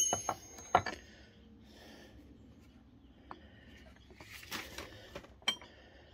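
Metal nut drivers clinking against each other on a wooden bench as they are handled: one sharp ringing clink at the start, a few lighter clicks and knocks just after, then soft handling noise and one more click near the end.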